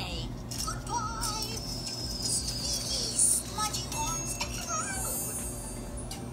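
Pop song playing, with a female voice singing over the backing music.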